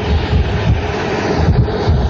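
Loud, steady background noise: a hiss over an uneven low rumble, like wind buffeting a microphone.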